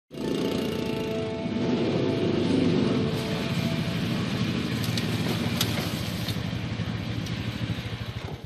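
Small engine of a side-by-side utility vehicle running as it drives in; its firing pulses slow near the end as it comes to a stop.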